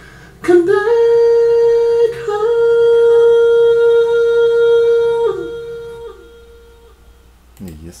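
A man's high sung note, pitch-corrected with Auto-Tune and played back with an echo effect. The note slides up about half a second in and holds at one flat, steady pitch for about five seconds, with a brief break near two seconds. It then drops off, and the echo tail fades out over the next second or so.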